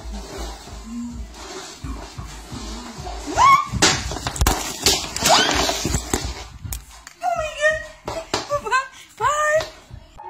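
Music playing in a small room while a woman dances, then a clatter of a fall about three to five seconds in, with two rising yelps. Raised voices follow near the end.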